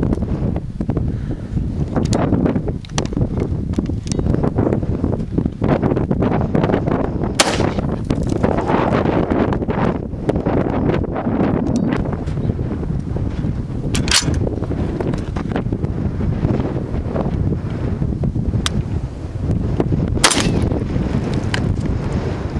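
Steady wind buffeting the microphone, broken by a few sharp 5.56 rifle reports, the loudest about twenty seconds in as the water bottle target is shot off the rail.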